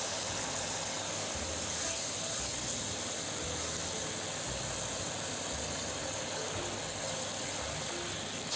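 Squid and bell-pepper stir-fry sizzling steadily in a hot non-stick pan, the oyster-sauce mixture just poured in.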